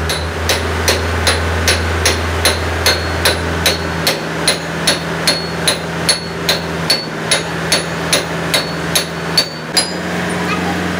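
A hammer striking a steel truck axle housing held in a lathe's four-jaw chuck, in steady blows at about two and a half a second, each with a short metallic ring. This is the tapping used to true the workpiece in the chuck. A steady low hum runs underneath and drops out about four seconds in.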